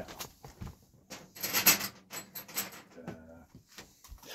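Rustling and light clatter of camping gear being handled and rummaged through on the floor, loudest for about a second and a half in the middle.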